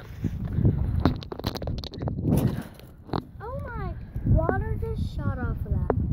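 Knocks and rumbling handling noise from a phone carried by someone on the move, then a boy's voice calling out in the second half.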